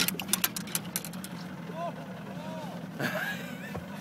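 A steady low hum under faint, distant voices, with a quick run of sharp clicks and knocks in the first second, the sound of handling on a boat deck.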